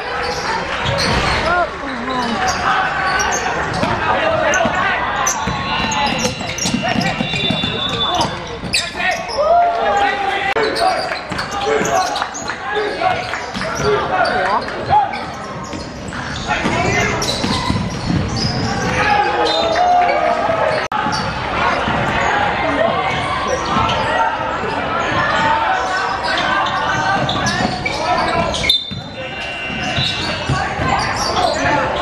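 Basketball bouncing and dribbled on a gym floor during live play, with players and spectators calling out, all echoing in a large indoor sports hall.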